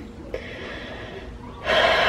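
A woman's soft breathing in a pause between sentences, ending in a sharper, audible intake of breath about a second and a half in, just before she speaks again.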